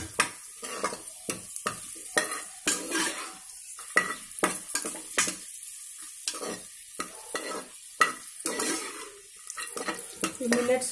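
A steel spoon stirring and scraping cashews and raisins around the bottom of an aluminium pressure cooker, with irregular clinks and scrapes over a faint sizzle of frying.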